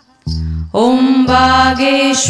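Devotional mantra chant with music. After a brief gap at the start, a low beat pulses in a repeating pattern, and from about three-quarters of a second in a woman's voice holds a long sung note over it.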